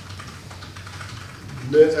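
Soft, irregular clicking of a computer keyboard being typed on, with a man's voice starting again near the end.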